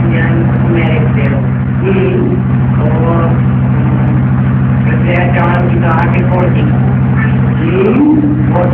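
Indistinct speech over a steady low motor drone with a fast, even pulse that runs throughout.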